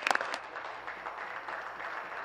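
Applause from legislators clapping their hands: a few sharp claps at the start, then a steady patter of clapping.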